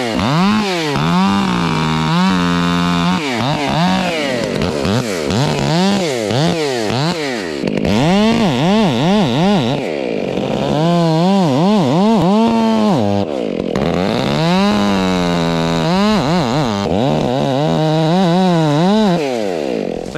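Gas chainsaw boring into the trunk of a leaning dead maple with a dull chain. Its engine revs up and falls back over and over, roughly once a second, then drops off near the end.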